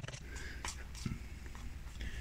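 A spoon stirring flour and egg-and-clementine liquid into a stiff batter in a glass bowl: faint, irregular scraping strokes with a few soft knocks.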